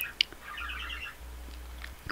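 Pet birds chirping in the background: a short, quick run of high chirps in the first half, after a faint tick.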